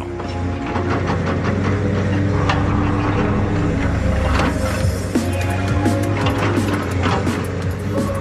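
Background music with held notes that change pitch every second or so, over a steady low drone.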